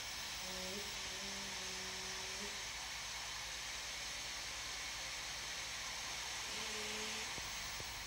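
Steady hiss of compressed air escaping from under an air-film transporter's air bearings as it floats a heavy cable drum, with a faint low hum twice.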